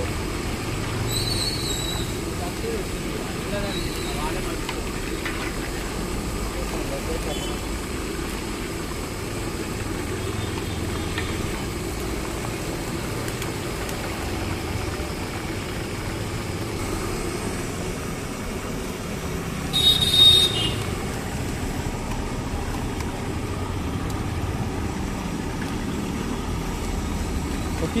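Chicken wings deep-frying in a large iron kadai of bubbling oil over a gas burner, a steady sizzle and burner noise under street background noise. A brief, loud, shrill sound cuts in about twenty seconds in.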